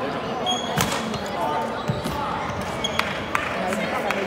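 Badminton rally on a wooden gym court: sharp racket strikes on the shuttlecock, the loudest about a second in and lighter ones near the end, with brief squeaks of shoes on the floor, echoing in a large hall.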